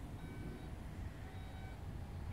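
Power tailgate of a 2017 Audi Q7 closing, its warning tone beeping twice, each beep about half a second long and about a second apart, over a low steady rumble.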